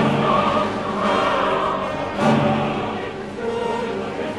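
Mixed choir and symphony orchestra performing late-Romantic choral music in sustained full chords. New loud chords enter at the start and again about two seconds in.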